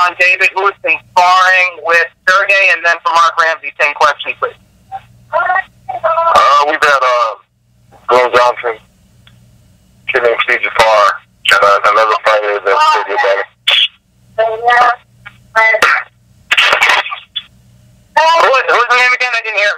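Only speech: a person talking over a conference-call telephone line, with a faint low hum heard in the pauses.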